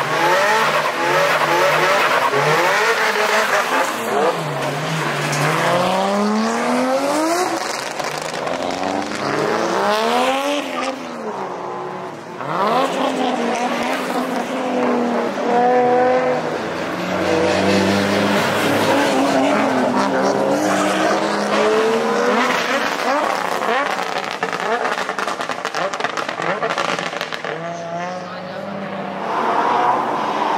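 Drift cars' engines revving high and dropping again and again as the cars slide, with tyres squealing and skidding on the asphalt.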